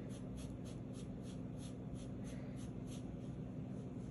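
Paintbrush bristles brushing and scraping over a styrofoam plate while mixing dissolved Skittles colour, in quick, even, faint strokes about four a second that die away near the end. A low steady hum lies underneath.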